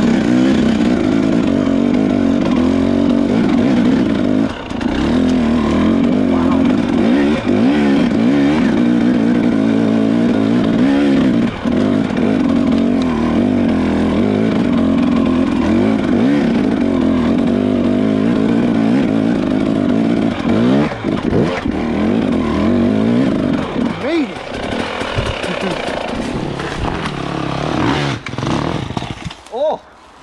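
Dirt bike engine running at low revs, its pitch wavering up and down as the throttle is worked over slow, technical trail. After about 24 seconds it turns choppier, and just before the end it falls away sharply.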